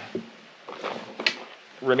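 A few faint knocks and rustles as a small cardboard box of Remington Thunderbolt .22 LR cartridges is picked up, with a brief low murmur of voice.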